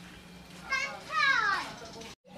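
Children's voices: a child calls out briefly, then again in a longer high-pitched shout that falls in pitch.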